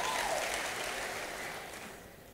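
Applause from a congregation, fading away.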